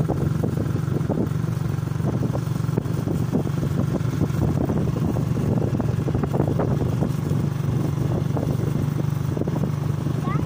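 Small motorcycle engine running at a steady speed while riding, with wind buffeting the microphone.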